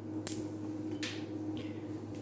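A few faint clicks and soft rustles of small objects being handled on a tabletop, over a steady low electrical hum.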